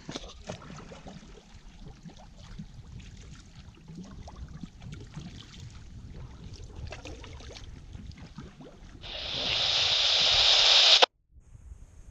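Kayak paddles dipping and water lapping around a sit-on-top kayak's hull, faint and irregular. About nine seconds in, a loud rushing hiss swells up and then cuts off abruptly.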